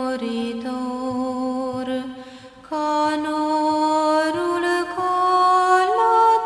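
Slow chant-like background music of long held notes that step from one pitch to the next, briefly fading about two seconds in before a new held chord comes in.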